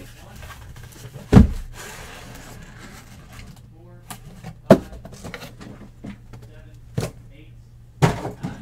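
Sealed card boxes being taken out of a cardboard shipping case and set down on a stack, one at a time: three thuds, about a second and a half in, near five seconds and at seven seconds, the first the loudest, with faint cardboard handling between.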